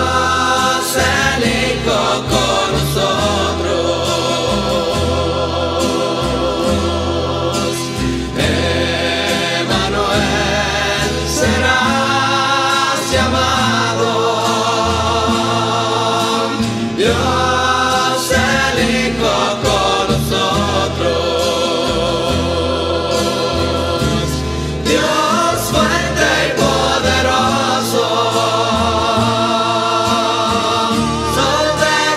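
A Christian rondalla song: a mixed choir sings long phrases with vibrato over guitar accompaniment and a low bass line, pausing briefly between phrases.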